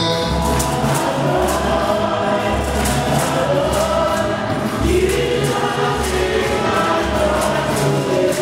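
Church congregation and choir singing a gospel hymn over a steady bass beat and regular percussion ticks.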